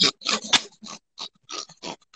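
A man laughing in short breathy bursts, about four a second, with no words.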